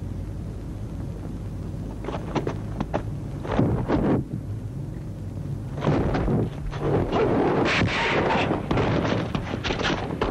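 Kung fu film fight sound effects: several separate thunks of blows a couple of seconds in, then a longer, busier stretch of struggle noise from about six seconds, over the old soundtrack's steady low hum.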